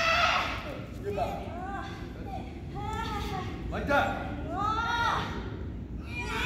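High-pitched women's voices crying out in a string of short shouts, several of them rising in pitch.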